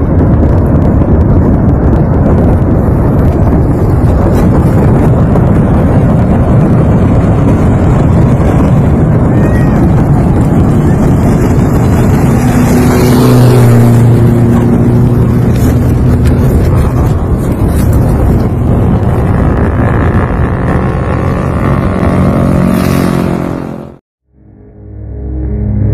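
A loud, steady low roar of outdoor noise. About halfway through, a vehicle's engine hum joins it, steady in pitch. All of it cuts off suddenly at the end.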